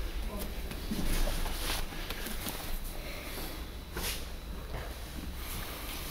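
Echoing sports-hall ambience with distant voices of other people teaching, plus a few soft knocks from movement on the mats.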